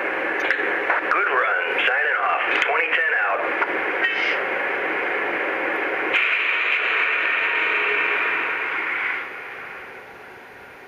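Sound system of a Lionel O-gauge GE hybrid diesel locomotive model playing radio-style voice chatter over a steady static hiss through its small speaker. The hiss gets louder about six seconds in and fades away near the end.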